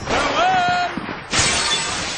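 A high voice drawing out the end of a word. Then, about a second and a half in, a sudden shattering crash sound effect that rings on and slowly dies away.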